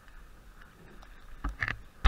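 Faint rolling hiss of a mountain bike on a snowy trail, then near the end two sharp knocks as the bike and camera are jolted hard, the start of a crash or tumble.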